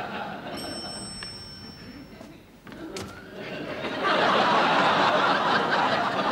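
Studio audience laughter that swells loud about four seconds in. Before it there is a brief high steady tone and a sharp click.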